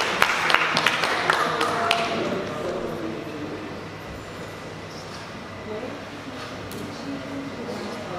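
Audience applause in a hall, thinning out and stopping about two seconds in, followed by quiet murmuring voices.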